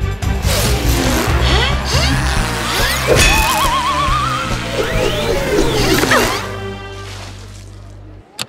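Dramatic cartoon action music mixed with electronic sound effects for a flying freezing gadget: swooping, gliding zaps, a warbling rising tone about three seconds in, and crash-like hits. The music thins to a held low note that fades away near the end.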